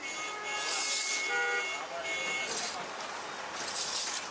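In-shell peanuts rattling and scraping as a flat iron spatula stirs them in an iron wok, in repeated bursts. Street traffic runs behind, with a steady horn tone through the first two seconds or so.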